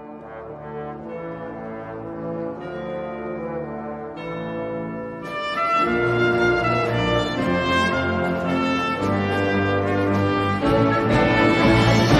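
Symphony orchestra playing film-score music: sustained chords building steadily louder. The full orchestra, brass included, with trombones and trumpets to the fore, comes in about five and a half seconds in.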